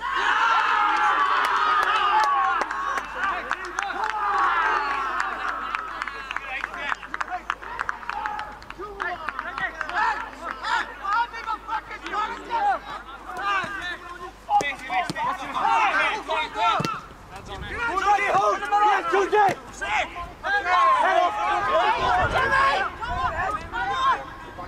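Several men's voices shouting and cheering over one another at a goal being scored. The shouting breaks out suddenly, is loudest for about the first six seconds, then goes on in bursts of calls.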